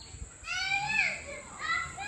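A child speaking in a high voice: two short phrases, the first about half a second in and the second near the end.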